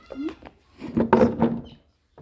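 A woman's voice: a few words, then about a second in a loud, drawn-out vocal sound held at a steady pitch.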